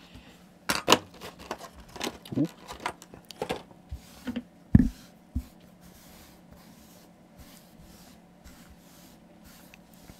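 Hands handling small hobby items on a cutting mat: a run of light taps, clicks and rubs, with the loudest knock about five seconds in, then only faint rustling.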